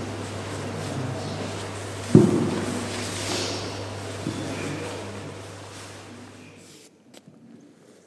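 Nylon reserve-parachute canopy rustling as its panels are handled, in a reverberant hall over a steady low hum that stops near the end. A single loud thump rings out about two seconds in.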